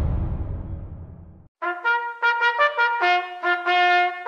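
A low rumble fades away, and about a second and a half in a trumpet starts a military-style bugle call of short, repeated notes on a few pitches.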